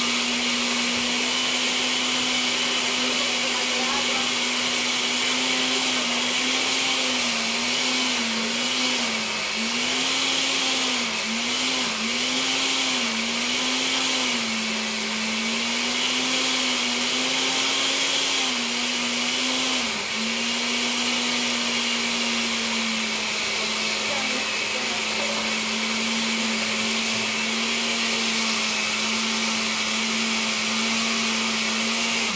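Countertop blender running, puréeing chopped onion, bell peppers, cilantro and garlic with a little water for a sofrito. Between about six and twenty seconds in, the motor's pitch repeatedly dips and recovers as it works through the vegetables, then it settles to a steady hum.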